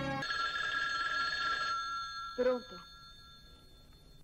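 Landline telephone's electromechanical bell ringing, one ring of about a second and a half whose tone rings on and fades. A short, loud vocal sound comes about two and a half seconds in.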